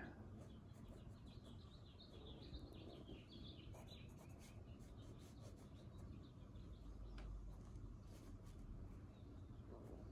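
Near silence: faint birds chirping in the first few seconds, under the faint strokes of a felt-tip pen drawing on sketchbook paper.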